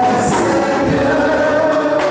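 Gospel praise singing: several vocalists singing together through microphones over a live band with electric guitar, keyboard and drums, amplified in a hall.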